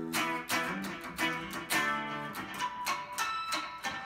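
2001 Dean Flying V electric guitar with Seymour Duncan pickups, played through an amp: a picked rock riff of chords and single notes, struck about three times a second.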